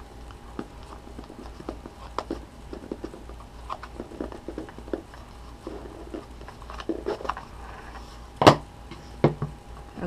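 Hands fumbling at a small stiff-lidded box, with scattered light clicks and knocks of the box being handled and pried at. Near the end comes one sharp loud snap, then a smaller click, as the tight lid comes free.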